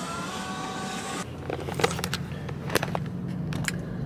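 Background music for about the first second, then a car's steady low engine hum heard from inside the cabin, with a few scattered sharp clicks and knocks.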